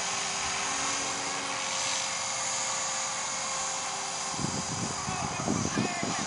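Align T-Rex 450 electric RC helicopter in flight overhead: a steady whine from its motor and spinning rotors, holding an even pitch. A louder, choppier sound comes in over it about four seconds in.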